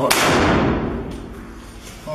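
A rifle shot fired from inside a room: one loud, sharp report at the start that rings on and dies away over about a second and a half.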